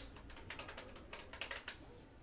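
Computer keyboard typing a short word: a quick, irregular run of key clicks.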